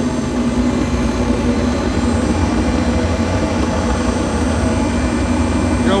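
Liquid-fuel radiant tube burner firing hard, a loud, steady roar of combustion and its air blower with a constant low hum, burning what is called 'thermonuclear'.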